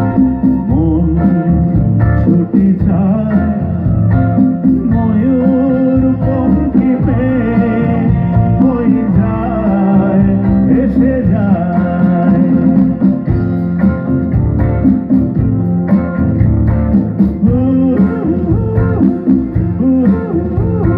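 Male vocalist singing a Bengali song live into a microphone over a full band, with electric guitar prominent. The music is loud and continuous throughout.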